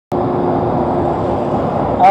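Steady rumble of wind on the camera microphone of a moving bicycle, mixed with traffic noise from the city road alongside.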